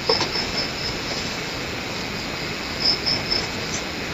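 Steady background hiss, with faint high-pitched chirping that comes in short runs, once near the start and again about three seconds in.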